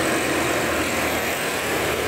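Light diesel truck loaded with logs driving past close by, its engine and tyres making a steady noise, with motorcycles following behind it.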